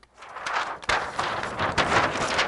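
Large sheets of chart paper rustling and crackling as they are flipped over on a wall-hung pad, a rough continuous rustle with sharp crinkles starting just after the beginning.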